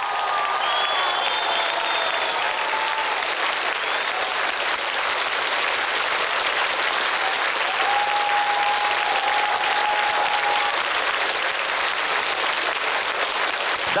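Studio audience applauding steadily, with a few voices calling out above the clapping.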